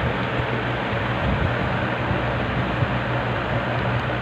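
Steady low mechanical hum with an even hiss over it, unchanging throughout.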